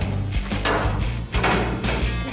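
Background music with a steady bass line and sharp percussive hits at a regular beat.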